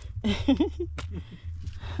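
A woman's breathless voice: short wavering out-of-breath sounds, then a laugh starting near the end, from the strain of climbing a long flight of mountain steps. A few sharp clicks and a steady low rumble sit underneath.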